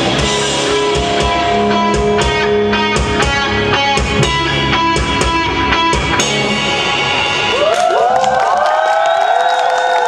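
Live rock band playing, with drums and electric guitars. About seven seconds in, the drums stop and the guitar notes carry on alone, bending up and down in pitch.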